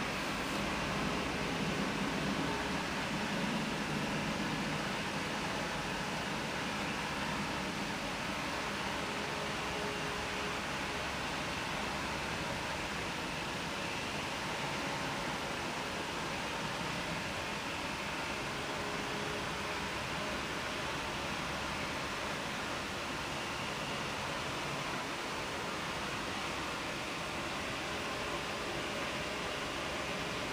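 Steady room noise: an even hiss with no distinct events, like a fan or air conditioning running.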